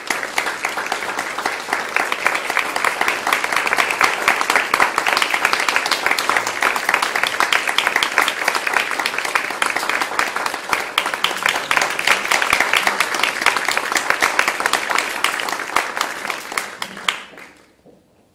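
Audience applauding: dense, steady clapping that dies away near the end.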